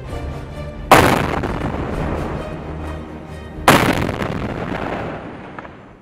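Two explosions about three seconds apart, each a sudden blast that dies away over a couple of seconds: controlled detonation of landmines and unexploded ordnance.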